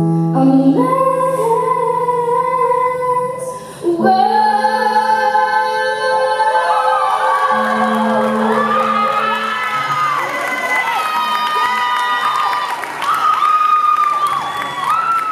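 A woman singing the closing lines of a song with electronic keyboard accompaniment, holding long notes. In the second half audience cheering and shouts rise over the final notes.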